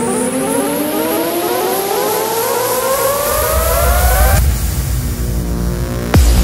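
Psytrance build-up: electronic synthesizer tones gliding steadily upward in pitch, like a siren, over a rising high noise sweep. A deep bass swell enters about three seconds in, and the rising tones cut off suddenly about a second later.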